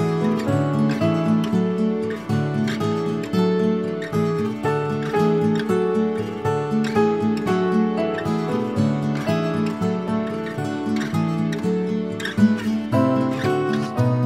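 Background music: a plucked acoustic guitar playing a steady picked pattern of notes.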